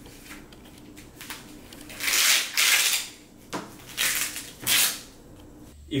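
A strap being fitted onto a small handheld cold-and-heat therapy device: several short rustling, scraping bursts of handling, the longest about two seconds in, then three shorter ones.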